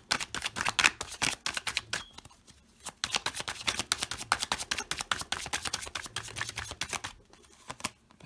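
A tarot deck being shuffled hand to hand: rapid papery flicks of card edges in two runs, the first about two seconds long and the second about four, with a short pause between.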